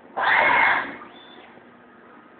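A loud, harsh burst of noise from a Deckel Maho DMP 60S CNC mill at work, lasting under a second, against a steady low hiss.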